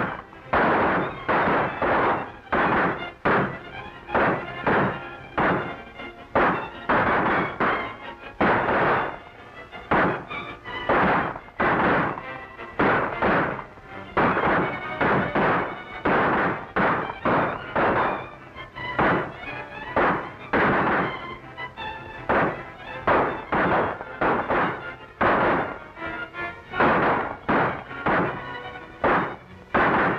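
Gunfire in a shootout: shot after shot at an irregular pace of one or two a second, over the film's background music.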